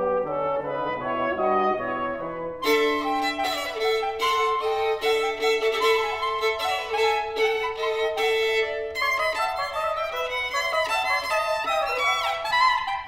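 Live chamber ensemble music, violin to the fore. A softer opening passage gives way, about two and a half seconds in, to the fuller ensemble with one long held note under moving lines, and quicker, busier playing fills in near the end.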